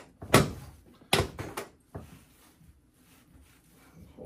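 Two sharp thuds about a second apart near the start, as the raised section of a chiropractic drop table drops under the chiropractor's thrusts on the acromioclavicular joints.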